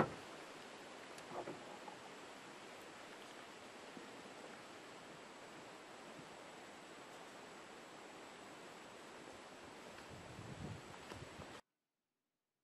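Faint, steady outdoor background hiss with a thin high whine running through it, opened by a sharp click and cutting off abruptly into dead silence near the end.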